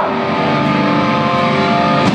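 Live hardcore band through a loud club PA: distorted electric guitars holding a ringing chord, with no vocals.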